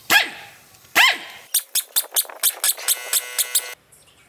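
Two loud barks about a second apart, then a pneumatic impact wrench hammering at the forklift's wheel-hub nuts in quick regular strokes, about five a second, which stop abruptly near the end.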